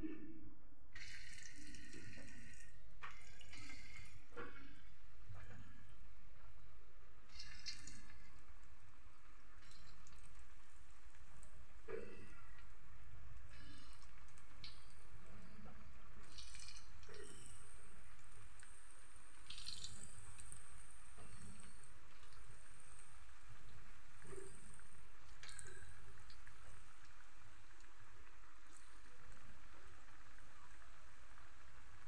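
Combro, balls of grated cassava, frying in hot oil in a wok: a steady sizzling and bubbling, with scattered sharp pops and spatters as more balls are dropped into the oil.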